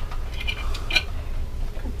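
Steady low hum of a ship's cabin, with two brief high-pitched sounds about half a second and a second in.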